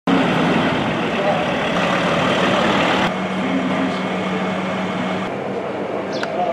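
A vehicle's engine running with a steady low hum under outdoor noise. The sound changes abruptly about three seconds in and again near the end.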